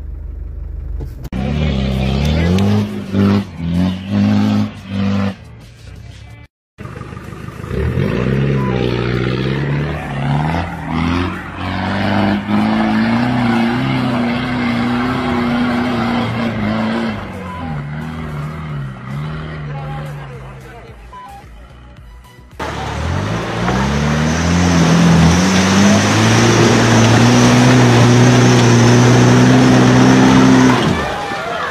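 Off-road 4x4 engines revving hard under load in a run of short clips, the pitch climbing with each burst of throttle. There is a brief silent break about six seconds in and another change about twenty-two seconds in. The loudest stretch comes near the end: a Land Rover Discovery engine held at high revs with a hiss of wheels spinning and throwing sand.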